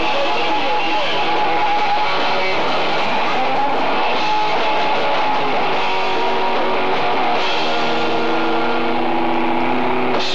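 Live punk rock band playing electric guitars and drums, picked up by a single camera microphone, so the sound is thin and lacks bass.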